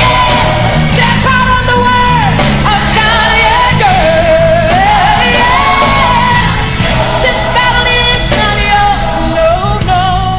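Gospel song recording: a female lead singer holds long notes that bend and slide through the melody, over bass and band accompaniment.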